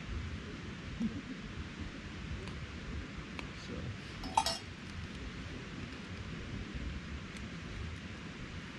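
Spoon stirring noodles in a small metal backpacking-stove pot, then knocked once on the pot with a single sharp, ringing clink a little past the middle. A steady low rumble runs underneath.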